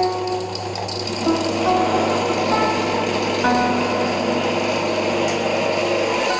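Small electric grain grinder running steadily, a constant motor hum under the noise of the mill, with plucked-string background music over it.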